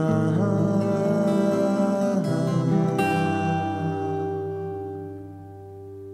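Recorded acoustic guitar music playing. A final chord is struck about halfway through and is left to ring out, fading away.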